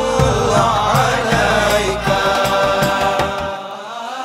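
A male voice singing a naat (an Urdu/Arabic devotional song in praise of the Prophet), holding long gliding notes over instrumental backing with low bass and beats. The bass and beats drop out about three and a half seconds in, leaving the voice.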